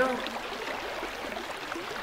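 Running water of a stream, a steady rushing hiss with small gurgles.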